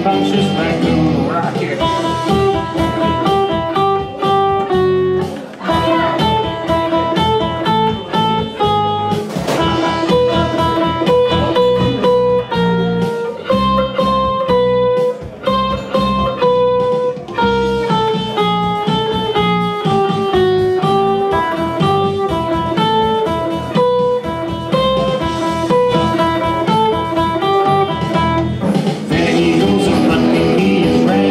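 Electric guitar playing a single-note melody line, one note at a time, over a backing track with a steady beat.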